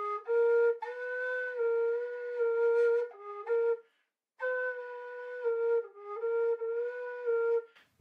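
Carbony carbon-fibre tin whistle in A-flat playing short phrases of low notes that step between two or three neighbouring pitches, with a pause for breath about halfway through. The note a half-step above the low second degree is sounded by opening the lower thumb hole rather than half-holing.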